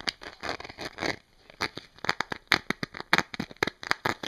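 Fingertips and nails tapping and scratching on a stiff, crinkly object, a quick irregular run of sharp taps with a short scratchy stretch in the first second.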